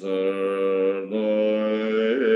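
A man chanting a Buddhist prayer on one steady pitch, in two long held notes with a brief break about halfway.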